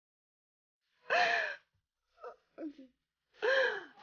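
A woman's voice making two short wordless exclamations, one about a second in and one near the end, each rising and falling in pitch, with two faint short sounds between them.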